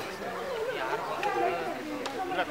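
Crowd chatter: several people talking at once, no single voice standing out.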